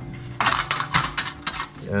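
Light metallic clinking: a thin aluminium license plate knocking and rattling against a cut steel bracket as it is held up to it, a quick run of about eight clinks lasting about a second.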